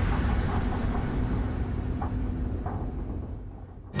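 Low, steady rumble of a dramatic sound-design bed under a video montage, fading out over the last second.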